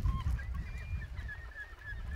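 Wind buffeting the microphone in a low rumble. From about half a second in, a bird calls in a run of short high chirps, about five a second.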